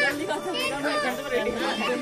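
Several people's voices talking over one another, with no single speaker clearly made out.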